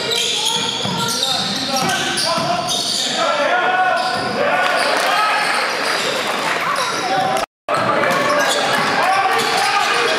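Live basketball game sound in an echoing gym: a ball dribbled on a hardwood court, sneakers squeaking, and players' and spectators' voices. The sound cuts out completely for a moment at an edit about three quarters of the way through.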